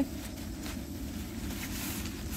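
Low steady outdoor rumble with a few faint rustles of the pop-up tent's nylon fabric as it is twisted to be folded.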